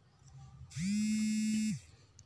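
A steady electric buzz lasting about a second, sliding up into its pitch at the start and down again as it stops.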